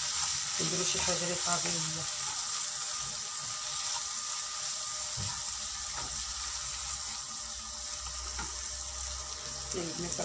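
Minced meat sizzling in a hot frying pan while it is stirred with a wooden spatula, a steady frying hiss.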